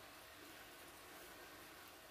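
Very faint, steady sizzling of chicken skewers frying in oil in a pan.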